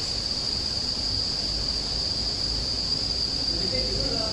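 A steady high-pitched whine that runs unbroken, over a low background rumble.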